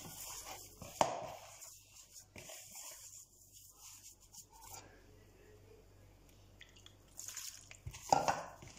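Faint squishing and pressing of a hand kneading moist cornmeal dough in a bowl, with one sharp click about a second in.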